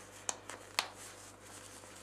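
Plastic snaps on a cloth diaper being pressed shut to shorten the rise: two sharp clicks about half a second apart, with a fainter click between them.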